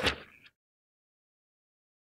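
A brief rustle of paper notes being handled that fades out within the first half second, then dead silence.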